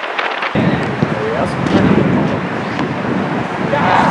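Wind rumbling on the microphone, starting abruptly about half a second in, with a few players' shouts carrying across the pitch.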